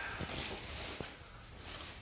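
Footfalls of trainers on a tiled floor during walking lunges, a sharp tap about a second in, with soft rustling between steps that fits the plastic wrap of a six-pack of water bottles being carried.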